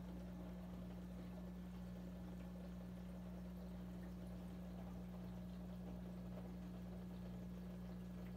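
Aquarium filter running: a steady low hum with a faint watery haze, unchanging throughout.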